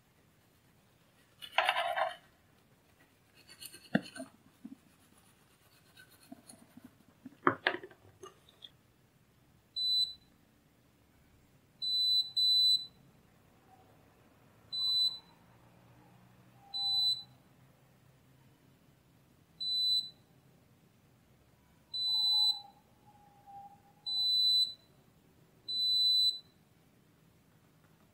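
A digital multimeter's continuity buzzer sounds about nine short, high beeps over the second half, each one showing that a pin of the SMD IC and its adapter pin test as connected. Before the beeps come a few clicks and scrapes.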